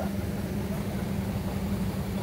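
Boat outboard motor running steadily at low speed, an even low hum.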